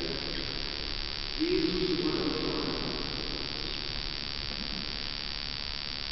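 A distant voice in a large, reverberant church, held on one steady pitch in an intoned phrase that starts about a second and a half in and lasts about a second and a half, with a faint tail after it. A steady hiss runs underneath.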